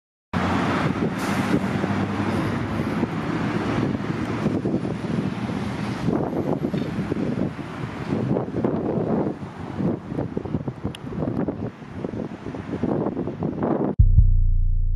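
Road traffic noise: vehicles passing on a road, rising and falling, with a steady engine hum under it in the first few seconds.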